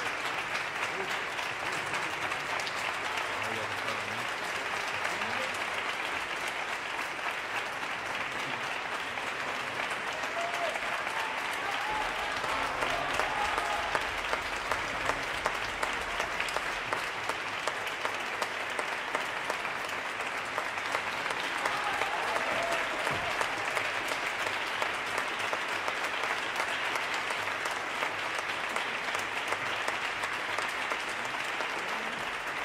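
Sustained audience applause, dense and steady, filling the hall after a live tango performance ends.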